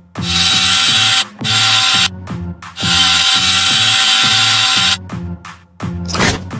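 Electric drill running in three bursts, about a second, half a second and two seconds long, as it bores through a thin strip of wood. It stops about five seconds in. Background music with a beat plays underneath.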